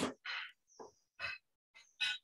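A paper pad being picked up and handled, its sheets rustling in several short bursts, the loudest right at the start.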